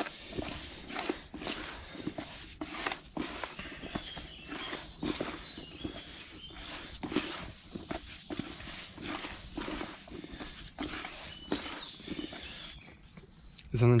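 Hands kneading and crumbling damp groundbait in a plastic bucket: irregular rustling, crunching scrapes and pats as the mix is worked while water is added to it a little at a time, going quieter shortly before the end.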